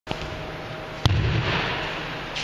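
A person's body slamming onto a padded judo mat as a kotegaeshi wrist throw finishes: one heavy thud about a second in, after a faint tap at the very start, with rustling and sliding on the mat after it.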